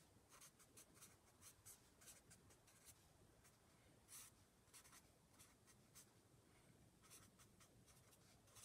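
Faint, irregular strokes of a felt-tip marker writing on paper.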